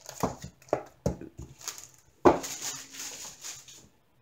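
Handling noise from a small leatherette glasses case being closed and picked up: a few light clicks and knocks, then a sharper knock a little past two seconds in.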